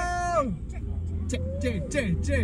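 A held group cheer that slides down in pitch and breaks off just after the start, over the steady low road rumble of a car cabin; from about a second and a half in, a quick rhythmic run of short falling-pitch vocal calls, about three a second, begins.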